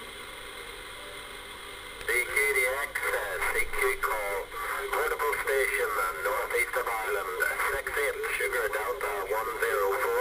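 Radio receiver on upper sideband: a steady hiss of band static, then about two seconds in a distant station's voice comes in over the noise, thin and band-limited and too garbled for words to be made out.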